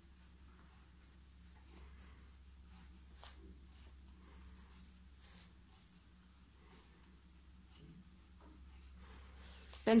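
Graphite pencil scratching across lined notebook paper as cursive letters are written: a faint, uneven run of short strokes over a low steady hum.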